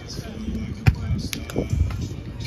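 A beach volleyball being hit by hand: one sharp slap a little under a second in, followed by lighter hits.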